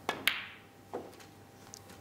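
Snooker shot: a light tap of the cue tip on the cue ball, then a loud sharp click as the cue ball strikes a red a quarter second later, followed by a softer, duller knock about a second in.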